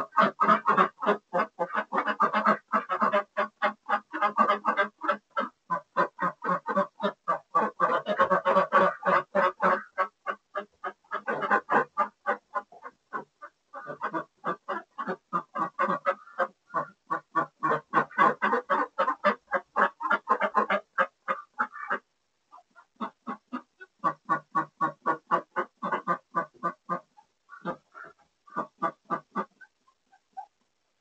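A flock of white domestic hen ducks quacking loudly in fast runs of quacks, about five a second, with several voices overlapping. The calling breaks off briefly a few times, about ten, fourteen and twenty-two seconds in, then resumes.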